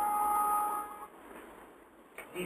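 A steady tone made of two pitches sounding together, held until about a second in, then cutting off.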